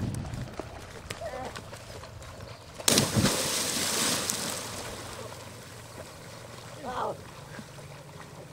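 A person jumping from the bank into a lake: one loud splash about three seconds in, then water churning and settling over the next second or so.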